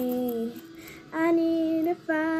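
A young girl singing, her voice alone: a held note that slides down and ends about half a second in, a short gap, then another steady held note.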